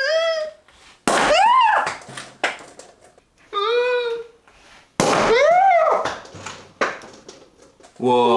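A woman's high-pitched squeals, four of them, each rising and then falling in pitch, as she braces for a champagne cork to pop; the second and fourth begin with a sudden sharp hit.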